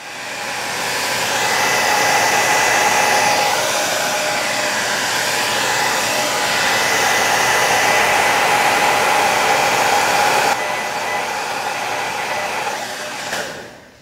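Revlon Salon 360 Surround Styler hair dryer blowing steadily, with a faint whine in its rushing air. It spins up over the first second or two, drops a little in level about ten seconds in, and winds down near the end.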